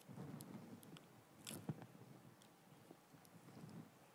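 Near silence with faint, scattered crinkles and clicks from plastic-sealed communion cups being handled and their bread eaten, with one louder crackle about a second and a half in.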